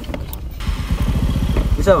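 Small motor scooter engine idling with a steady low putter, cutting in about half a second in.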